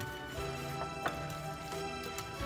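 Background music with held tones, over a few faint clicks of a wire whisk knocking against a glass bowl as a thick, creamy mixture is stirred.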